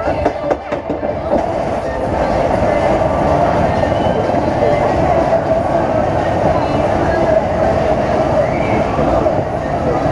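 Small family roller coaster train running along its steel track, heard from a seat on board: a steady rumble of wheels on rail, with a few sharp clacks in the first second or so.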